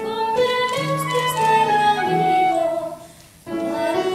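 A woman singing a theatre song with instrumental accompaniment, her voice gliding between held notes. The sound drops away briefly about three seconds in, then the singing and accompaniment come back.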